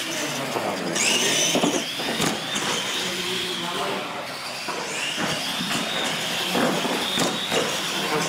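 Electric R/C monster trucks racing side by side: a high motor and gear whine rises and falls twice as they speed up and slow down, over a noisy bed of tyre and drivetrain sound with scattered short knocks.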